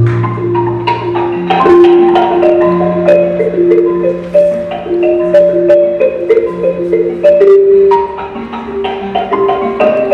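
Instrumental music: a melody of held pitched notes moving over a lower line of long sustained notes, with light percussive taps.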